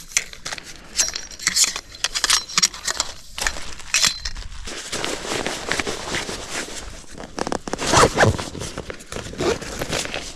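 Camping gear being packed by hand: a nylon stuff sack rustling and being pulled, with scattered sharp clinks and clicks from its metal parts.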